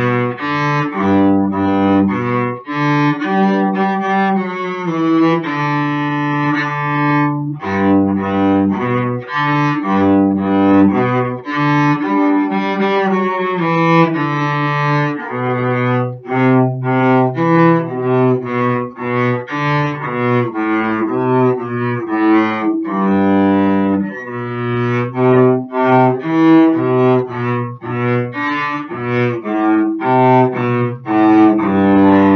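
Solo cello played with the bow: a continuous melodic passage, with longer held notes in the first half giving way to shorter, quicker notes from about halfway through.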